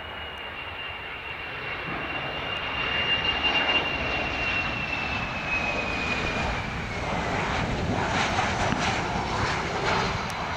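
Boeing 737-300 jet airliner with CFM56-3 turbofan engines passing close on landing approach. A high engine whine slides down in pitch as the plane goes by, over a rushing engine noise that swells about three seconds in and turns rougher in the last few seconds as the plane comes down to the runway.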